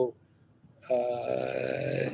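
A short silence, then a man's long drawn-out "uhhh" hesitation held on one steady pitch for just over a second.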